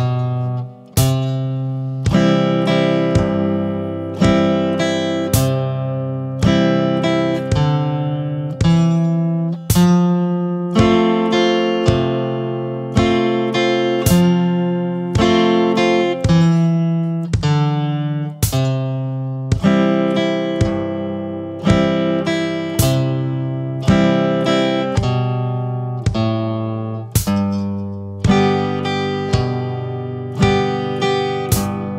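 Electric guitar with a clean tone strumming chords at a slow, steady beat, about one strum a second, moving to a new chord every four beats.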